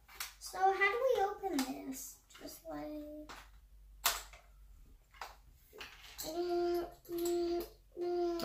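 A child's voice making play sounds, some of them held on a steady pitch, with a single sharp click about four seconds in.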